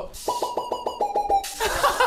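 Synthesizer notes from a MIDI keyboard: a quick run of about eight short notes at one pitch, the last ones a step lower, stopping after about a second and a half.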